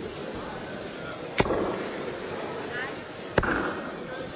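Two sharp thuds about two seconds apart, darts striking a bristle dartboard, over the low murmur of a crowd in a hall.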